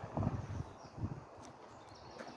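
A few faint footsteps on a gravel drive, the loudest steps about a quarter second and one second in.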